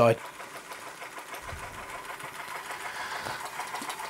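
Linemar Atomic Reactor model steam engine running under steam, its small engine and flywheel making a quiet, fast, even ticking beat.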